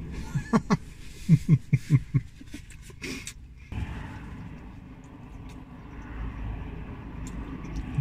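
A man laughing in a few short bursts, then the steady low rumble of road traffic heard from inside a parked car, growing louder near the end as a car passes.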